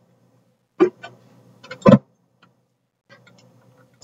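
Two short knocks a little over a second apart, the second a heavier thump, with a few faint clicks, from containers being handled at a kitchen counter. The sound cuts out to dead silence around them.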